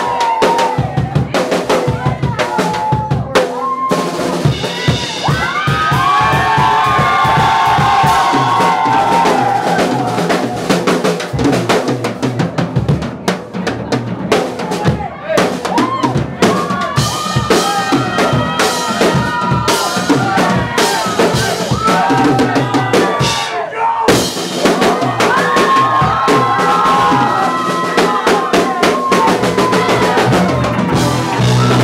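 Drum kit solo played live: a dense run of bass drum, snare and cymbal hits in fast fills.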